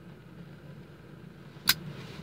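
Steady low hum inside a vehicle cabin, with one short, sharp pop near the end.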